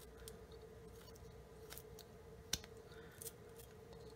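Flexcut detail knife cutting into soft basswood: faint, scattered crisp clicks and snaps as the blade is pushed into the wood and small chips split away, the loudest about two and a half seconds in.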